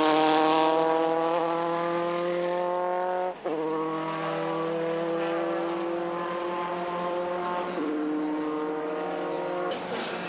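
Formula 3 racing car's four-cylinder engine at high revs, pulling through the gears. The pitch climbs steadily, breaks briefly with an upshift about three and a half seconds in, climbs again, then drops a step near the end.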